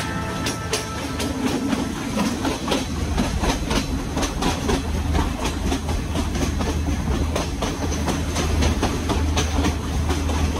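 Passenger train running along the track, heard from an open carriage window: a steady low rumble with an uneven run of sharp wheel clicks over the rails.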